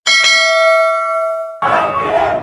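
A notification-bell ding sound effect rings once and fades over about a second and a half. Music comes in just before the end.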